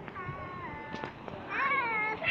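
A young child's high-pitched wordless calls: two drawn-out squeals, the first falling in pitch.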